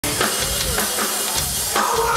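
A punk band playing live, with the drum kit to the fore: steady kick and snare hits about two to three a second.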